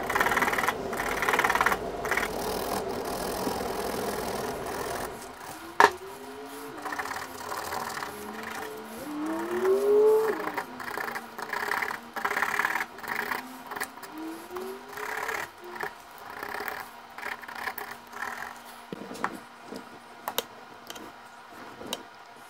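A small carving knife shaving and scraping a wooden lure body in short, repeated strokes. A sharp click comes about six seconds in.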